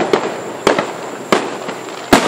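Aerial firework shells bursting in the sky: two sharp bangs about two-thirds of a second apart, with crackling in between.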